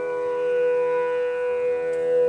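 Bamboo flute (bansuri) holding one long steady note, with accompanying instruments sustaining beneath it.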